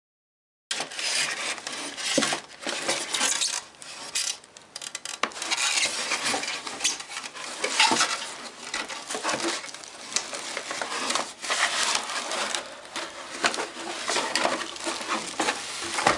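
Plastic wrapping crinkling and rustling, with cardboard and styrofoam packing scraping and knocking, as a boxed speaker system is unpacked by hand. It starts abruptly about a second in.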